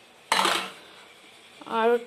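A single brief clatter of steel kitchenware, a third of a second in, fading within about half a second.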